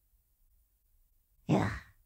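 A woman's short breathy sigh about one and a half seconds in, after near silence.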